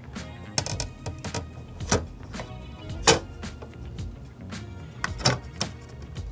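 Light clicks and taps of a glass fluid-mounting film holder and a film mask being lowered onto and fitted into a flatbed film scanner. The sharpest taps come about two and three seconds in, with a quick pair near the end.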